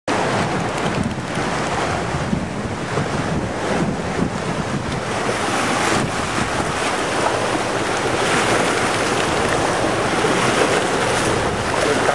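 Steady wind buffeting the microphone over the wash of small lake waves lapping against the dock.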